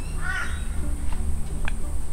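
A bird's harsh call near the start, with a couple of faint clicks later and a steady low hum underneath.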